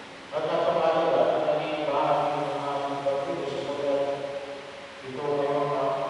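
Liturgical chant during Mass, sung in a low male-range voice on long held notes. It comes in three phrases: one starting just after the beginning, one at about two seconds and one just after five seconds.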